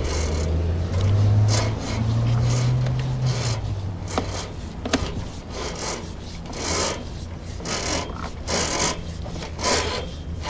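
Sewer inspection camera's push cable being pulled back through the drain line, giving repeated rubbing, scraping swishes every half second to a second. A low hum sits under the first few seconds.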